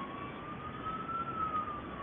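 Faint emergency-vehicle siren wailing, one slow rise and fall in pitch, over steady city background noise.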